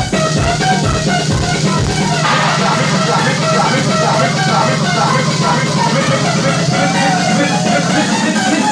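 Electronic dance music played loud over a club sound system: a steady kick-drum beat drops out about two seconds in, leaving a held bass note and synth melody lines, a breakdown in the track.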